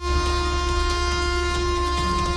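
A train approaching, with a steady, long-held horn tone over a low rumble.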